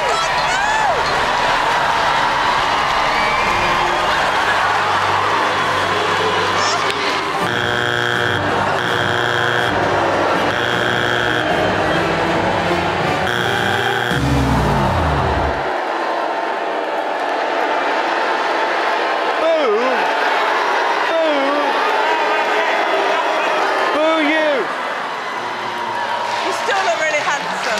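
A theatre audience screaming and cheering over music. About seven seconds in, the Got Talent judges' buzzer sounds in four harsh blasts, followed near fourteen seconds by a deep falling tone. Cheering and whoops carry on after.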